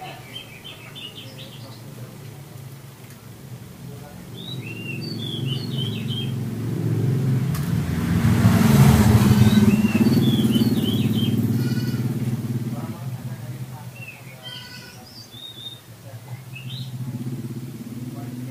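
Oriental magpie-robin singing in short bursts of quick whistled and chattering notes, with pauses between phrases. A low hum runs underneath, and a passing motor vehicle swells from about four seconds in, is loudest around nine seconds and fades out by about fourteen.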